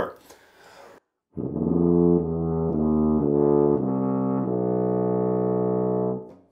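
Tuba playing a short series of about five low notes, the pitch stepped down the instrument by pressing its valves, ending on one long held note.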